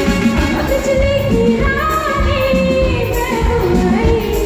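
A live band playing a Bollywood film song: a woman singing into a microphone over drums and percussion, with a trumpet playing.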